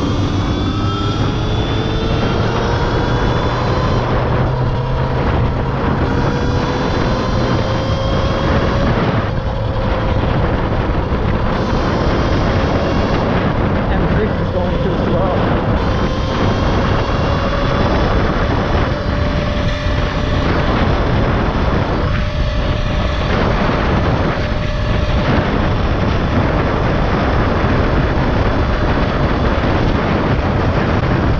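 Electric motor of a Talaria XXX electric dirt bike whining under full throttle, its pitch rising for roughly the first ten seconds and then holding nearly steady near top speed (about 50 mph). Heavy wind rush on the microphone and tyre noise are mixed in.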